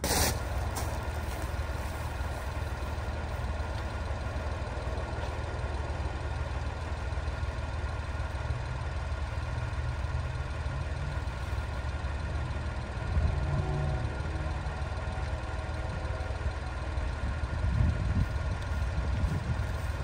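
A vehicle engine idling steadily, a low rumble with a constant hum. It swells slightly about two-thirds of the way through, and there is a sharp knock at the very start.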